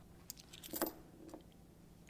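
Faint rustling and a few light clicks of hands searching through a wallet for money, the clearest cluster just under a second in.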